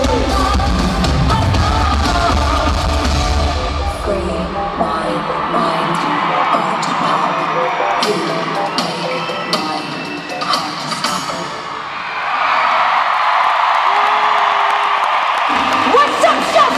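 Live pop music in an arena with a heavy bass beat that drops out about four seconds in, leaving thinner music and voices; near the end the crowd's cheering and whooping swells up.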